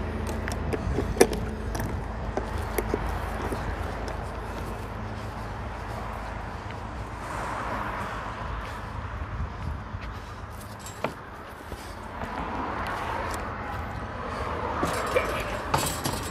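A heavy tow truck's engine idling in a low steady rumble, with scattered metallic clicks and clinks, the sharpest about a second in. After about six seconds the rumble drops away and street noise swells and fades twice.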